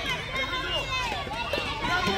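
Several voices of players and spectators talking and calling out at once, overlapping, with no single clear speaker.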